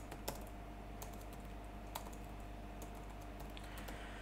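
Faint, scattered keystrokes on a computer keyboard as a word is typed, a few clicks spaced irregularly a fraction of a second to a second apart.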